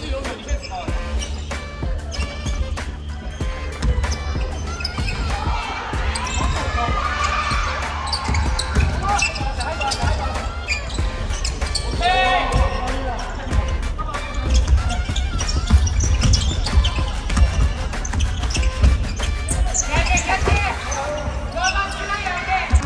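A basketball bouncing on a hardwood gym floor during play, with many sharp bounces through the whole stretch. Players' voices call out now and then.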